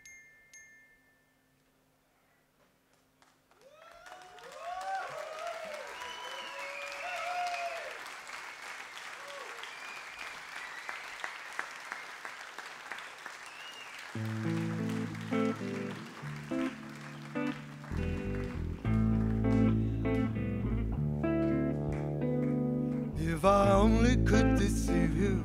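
Festival audience applauding and cheering, rising after a few seconds of near silence. About 14 s in a live rock band starts its next piece with low held bass and keyboard notes that step in pitch, growing louder as deeper notes and drum strokes join.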